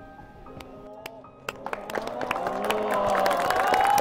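Soft closing notes of the performance music die away, then a studio audience breaks into applause and cheering about a second and a half in, swelling louder, with high shouts rising over the clapping.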